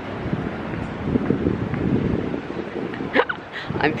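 Wind buffeting a handheld camera's microphone in an uneven low rumble. A short vocal sound about three seconds in, then a spoken word at the end.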